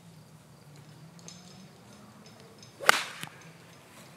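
Golf iron striking the ball off fairway turf on an approach shot: one sharp crack about three seconds in, with a faint tick just after.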